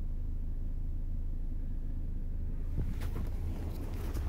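Steady low rumble of a motor vehicle in traffic, with a few faint clicks near the end.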